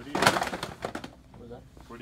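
A sudden loud noisy burst in the first half second, a few sharp ticks after it, then a short wordless voice sound near the end.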